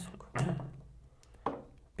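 Backgammon dice being thrown onto the board: a knock about a third of a second in, and a second sharp knock about a second and a half in, each dying away quickly.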